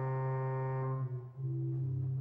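Church organ playing slow, held chords over a sustained low bass note. The upper notes change chord a little past a second in, with a brief dip in loudness.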